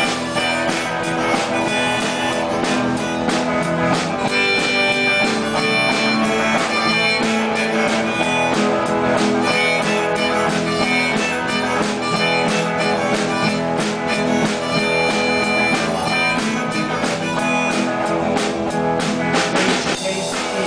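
Live band playing an instrumental passage of a blues song, with electric guitars and a drum kit.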